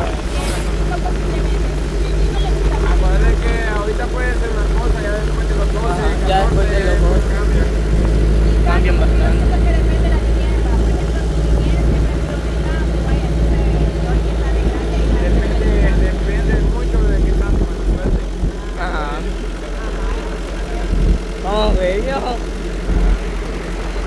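Steady engine drone and road rumble of a moving truck, heard from its open back, with voices talking now and then in the background.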